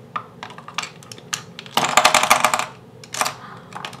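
Makeup pencils clicking and rattling against a clear acrylic organizer as they are handled and set back: scattered light clicks, a dense clatter about two seconds in, and a few more clicks after three seconds.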